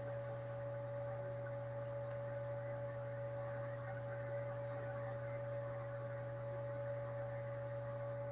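A steady low electrical hum with a thin, unchanging higher tone above it, holding at an even level with no other events.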